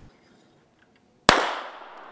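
A single pistol shot about a second and a half in, its report ringing out and fading away over the following moment.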